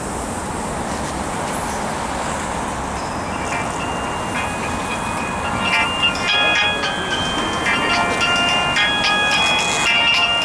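Mobile phone ringtone playing a melody of held electronic notes. It starts about three and a half seconds in, grows louder, and plays over steady city traffic noise.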